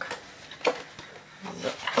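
A large stiff scrapbook paper pad being lifted and turned over by hand: a few short rustles and taps of paper and card.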